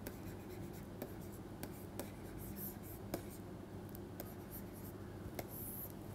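Plastic stylus scratching and tapping faintly on a pen-tablet screen during handwriting, with scattered light ticks, over a steady low hum.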